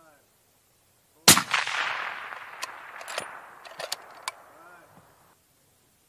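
A single shot from a suppressed sniper rifle about a second in, followed by a long echo that dies away over about four seconds. Several sharp clicks sound during the echo.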